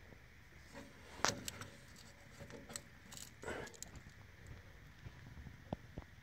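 Faint handling noise under a truck: scattered small clicks, taps and rustles of a hand working along the wiring harness and frame, the loudest tap about a second in.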